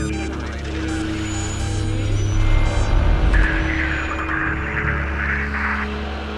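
Dark, music-like intro sound design over a logo sequence: a steady low drone with held tones and crackly digital glitch sounds. A harsh, honking buzz comes in about three seconds in and stops just before the end.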